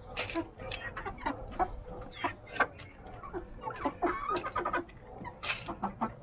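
Rhode Island Red hens clucking in short, irregular calls while they peck at feed, with frequent sharp taps of beaks on the gravelly ground.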